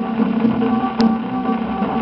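A 1940 Victor 78 rpm shellac record of a samba-canção playing on a turntable: an instrumental passage by a regional string ensemble with held notes, over the disc's surface hiss. About a second in comes one sharp click from the record surface.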